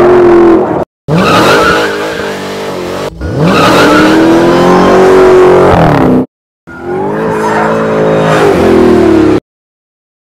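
Dodge Challenger SRT Hellcat Redeye's supercharged 6.2-litre V8 revving hard under throttle, with tyre squeal as the car drifts. It comes in edited pieces that cut off abruptly about a second in, around six seconds in and shortly before the end. One rev climbs steeply in pitch about three seconds in.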